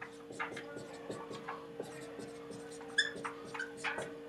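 Marker writing on a whiteboard: a run of short scratchy strokes, with a brief high squeak of the tip about three seconds in.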